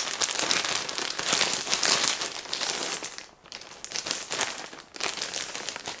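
Plastic packaging bag crinkling and rustling as it is handled and pulled at; the bag is stuck shut. The crackling runs on with brief lulls about three and a half seconds in and again near five seconds.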